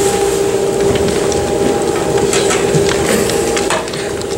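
A steady held tone runs throughout, over faint knocks and shuffling from people moving about.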